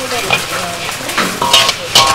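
A metal slotted ladle stirring and scraping through red sugar candy balls in a large iron wok, over a steady sizzle of the pan. In the second half come a few louder scrapes and knocks of the ladle against the metal, one with a brief ring.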